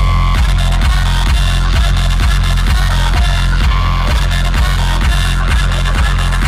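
Loud electronic dance music over a festival sound system. The heavy bass drops in suddenly at the start, then a steady kick drum pounds a little over twice a second.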